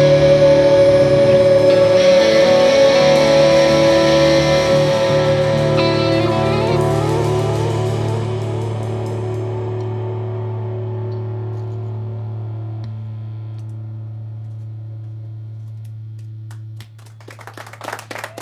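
Electric guitars with effects and bass holding a final chord that slowly fades away over many seconds. Near the end the sustained sound drops off suddenly and clapping begins.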